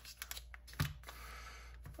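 Light clicks and taps of hands handling a small cardboard booster box, with a soft knock a little under a second in.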